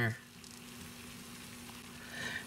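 Faint, steady sizzle from hot, cooked-down mushrooms in the pot of an electric jam and jelly maker, over a low steady hum.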